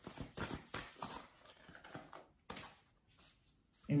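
A deck of oracle cards being shuffled by hand: a quick, irregular run of soft card clicks and slaps that stops a little before three seconds in.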